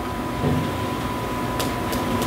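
Room tone in a meeting room: a steady low hum with a thin, constant high whine, and a few faint clicks near the end.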